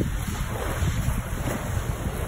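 Wind buffeting the microphone over small waves washing onto the beach, a steady rush with an uneven low rumble.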